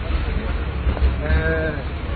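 A person crying out in one drawn-out vowel lasting about half a second, a little past the middle, over background voices and a steady low rumble.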